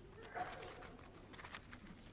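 Faint hall sound in a pause: soft scattered clicks and rustles from the listeners finding a Bible passage, with one brief faint sound about half a second in.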